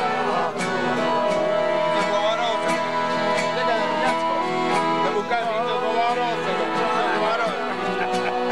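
Accordion music with guitar, held chords over a steady beat, with voices over it.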